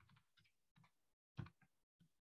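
Faint typing on a computer keyboard: a handful of separate keystrokes, the loudest about one and a half seconds in.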